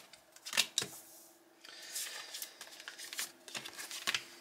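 Tarot cards handled on a marble tabletop: two sharp taps a little after the start, then from about halfway a run of rustling and small clicks as a card is slid across the table. A faint steady hum sits underneath.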